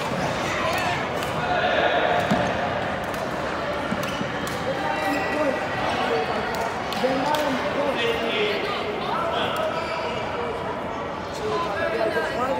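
Badminton rally in a large sports hall: sharp racket hits on the shuttlecock and players' footfalls on the wooden floor, over a continuous murmur of spectators' chatter.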